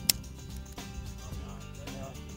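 Background music, with one sharp click just after the start.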